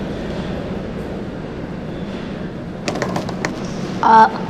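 Steady background noise, with a short run of clicks about three seconds in.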